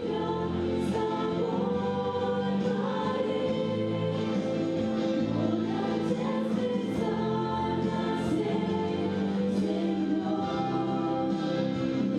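A group of young women singing a Christian song together into microphones, with long held notes.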